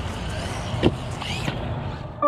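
Electric RC buggy's motor whining up and down in short revs over a steady low rumble of wind on the microphone, with one sharp knock about a second in.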